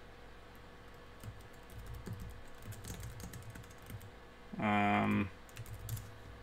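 Light typing on a computer keyboard, scattered soft keystrokes while a command is entered in a terminal. About three-quarters of the way in, a short hummed voice sound lasting about half a second stands out as the loudest thing.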